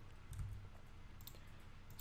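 Faint computer mouse and keyboard clicks, a few scattered taps, over a low steady hum.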